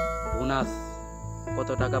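Insects droning steadily at a high pitch under a man's talking. The ring of a bell-like chime fades out in the first second.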